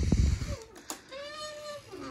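Snowmobile hood knocking as it swings open, followed by a short squeak from the hood hinge that rises and falls in pitch. The hinge is dry and wants lubricating.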